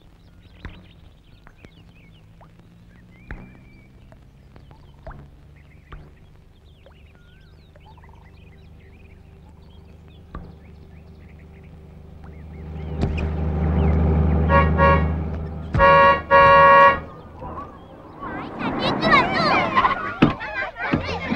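Faint bird chirps over quiet outdoor ambience, then a vehicle engine rumble grows louder about two-thirds of the way in and its horn sounds twice, the second honk longer. Voices begin near the end.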